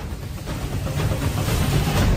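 A rush of noise with a deep rumble under a hiss, swelling steadily in loudness toward the end: an opening whoosh-type transition sound effect.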